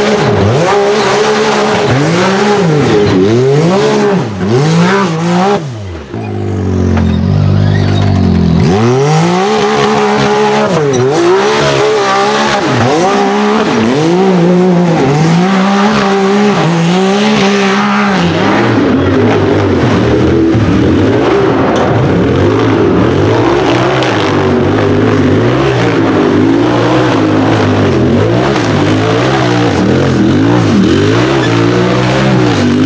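UTV engines revving hard on a steep dirt hill climb. The pitch surges up and falls back again and again with each stab of the throttle. About two-thirds of the way through, the sound turns to a denser, more even engine note.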